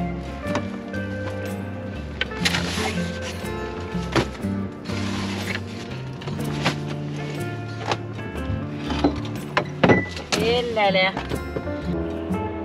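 Background music with a voice in it. Sharp knocks recur through the music, and a wavering voice stands out about ten seconds in.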